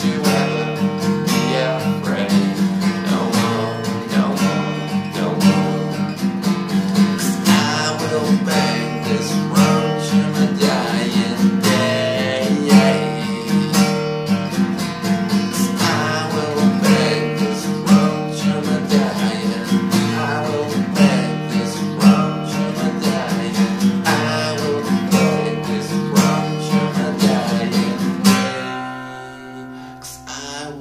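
Acoustic guitar, capoed, strummed steadily in a driving rhythm, with a man singing over it in places. The strumming eases off shortly before the end.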